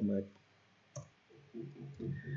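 A single sharp click on a computer keyboard about a second in, as a menu option is entered, between soft bits of speech.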